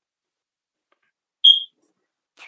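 Silence, then a single short, high-pitched electronic beep about one and a half seconds in.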